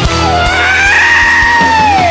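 Electric guitar solo over a live dangdut band: one long sustained note that bends up about half a second in, holds, and starts to bend back down near the end, with drums and bass underneath.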